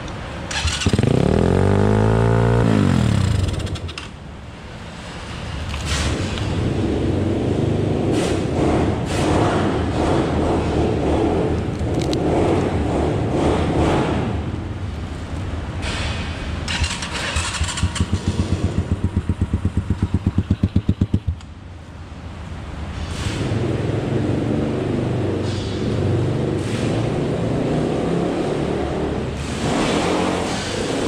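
150cc four-stroke single-cylinder dirt bike engine running and being revved, with a rev that climbs and falls about a second in. Around two-thirds of the way through there is a fast, even pulsing for a few seconds.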